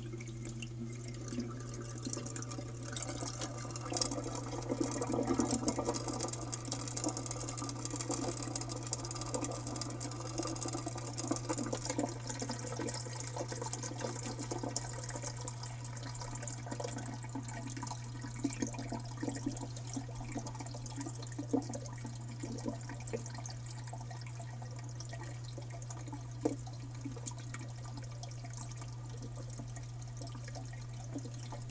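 Water gurgling and trickling as an aquarium hang-on-back overflow keeps draining through its U-tube siphons after the return pump has been switched off. The gurgle is busiest a few seconds in and thins out later, over a steady low hum.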